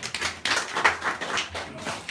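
A small group clapping: a quick, dense run of overlapping hand claps, applauding.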